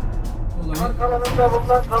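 Background music, then a man's voice over a microphone starting about a third of the way in, saying thanks to a crowd.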